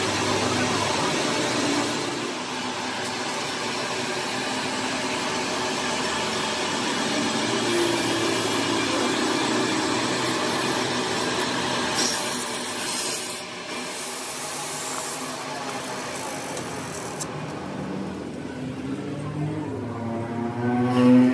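Metal lathe running, its tool scraping and rubbing on the spinning steel flange of a rebuilt truck axle shaft as the welded flange is machined. The noise turns harsher and hissier for a few seconds past the middle.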